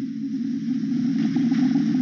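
A steady, low-pitched droning hum with no breaks.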